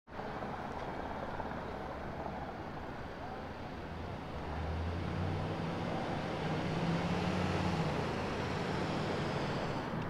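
City street traffic: a steady hum of road noise, with a vehicle engine's low rumble growing louder about halfway through.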